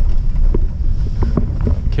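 Steady low rumble of a truck's engine and tyres heard inside the cab while driving, with a few faint short sounds over it.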